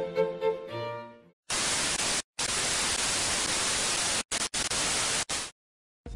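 Violin-led music fades out, then a steady hiss of white-noise static starts about a second and a half in. The static runs for about four seconds, dropping out briefly a few times, and cuts off suddenly near the end.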